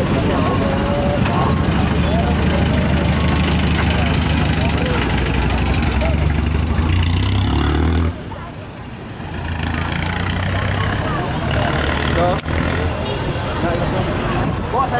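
Street traffic: a vehicle engine running steadily close by, with people talking over it. The engine noise drops away suddenly about eight seconds in, and general traffic noise and voices carry on after it.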